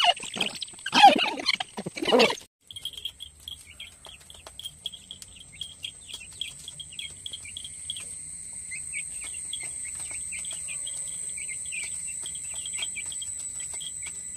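Young chicks peeping in quick, continuous short chirps, starting about two and a half seconds in, over a steady high-pitched whine that grows stronger about halfway through.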